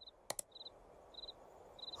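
Faint crickets chirping in a steady rhythm, one short high chirp about every half-second, over a soft hiss. A single sharp click comes about a third of a second in.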